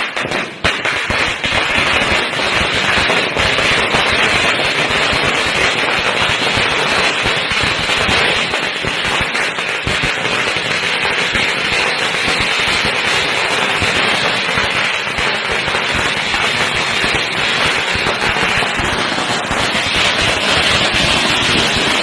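A long chain of small firecrackers (a ladi) going off one after another along the ground: a loud, dense, unbroken crackle of rapid bangs that sets in about half a second in and keeps up steadily.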